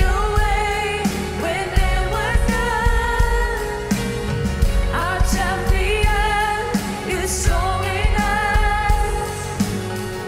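Live worship band: women's voices singing a slow melody in English over a drum kit and band, with drum hits underneath.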